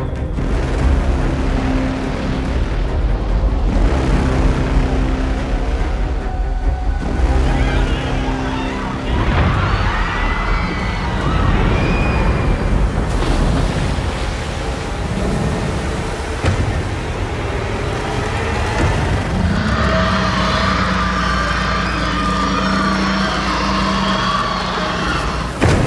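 Dramatic film score with deep booms and crashing effects: repeated held low notes at first, then a dense, loud mix of music and heavy rumbling impacts.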